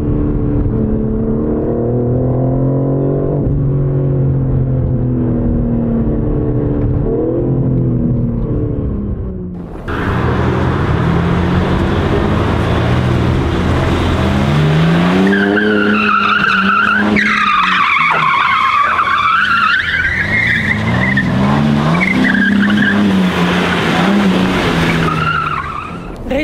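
BMW M4 CSL's twin-turbo inline-six heard from inside the cabin, pulling hard with its pitch climbing and dropping back twice as it shifts up. About ten seconds in the sound changes abruptly to outside: an engine revving with tyres squealing loudly for several seconds.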